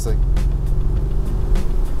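The 4.7-litre twin-turbo V8 of a Mercedes-Benz S550 Cabriolet rumbling at a steady engine speed while driving, heard from the open cabin with the top down.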